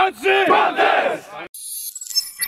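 A football team in a huddle shouting a breakdown chant together. About one and a half seconds in it cuts off abruptly and a bright, high-pitched logo sting sound effect begins.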